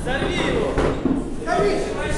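Voices calling out in a large hall during an amateur boxing bout, with a few dull thumps from the ring.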